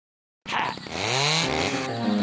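Chainsaw starting suddenly about half a second in and revving up, its pitch rising.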